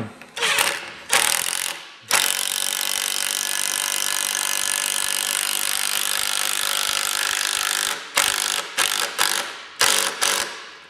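Makita cordless impact driver driving a two-and-three-quarter-inch construction screw through a caster's steel plate into a wooden board. It runs in two short bursts, then steadily for about six seconds, then in several short bursts as the screw is snugged down.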